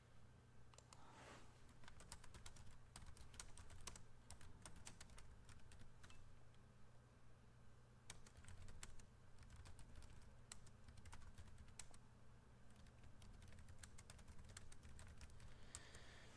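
Faint typing on a computer keyboard: quick, irregular key clicks in runs, over a low steady hum.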